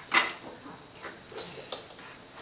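Toy building blocks clacking as they are set down and stacked: a few separate sharp clicks, the loudest just after the start and two lighter ones later on.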